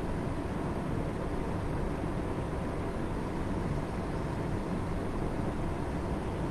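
Steady low background rumble and hiss with no distinct events: room tone.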